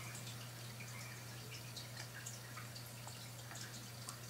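A faint, steady low hum with scattered small soft clicks and taps from fingers handling wires and a small circuit board.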